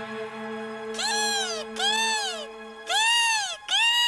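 A kestrel crying four times, about a second apart, each cry rising and then falling in pitch. Under the first cries a held orchestral chord fades out about three seconds in.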